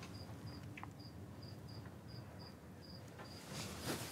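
Faint cricket chirping, short high chirps at an even pace of about three a second, with a brief soft noise near the end.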